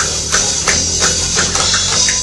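Heavy music with an electric bass guitar playing a low line, over a steady, high percussive tick about three times a second.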